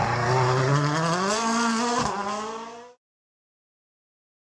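Toyota Yaris WRC rally car's turbocharged four-cylinder engine accelerating out of a hairpin, rising steadily in pitch, with one sharp crack a little after two seconds in. The sound stops abruptly about three seconds in.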